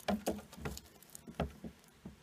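Light, irregular tapping and scrabbling, about a dozen small knocks in two seconds: a Dubia roach dropped into a tarantula enclosure moving over the substrate and cork bark as the tarantula seizes it.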